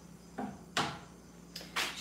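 Three short handling noises as things are moved about at a kitchen counter, the clearest just under a second in, with quiet room sound between them.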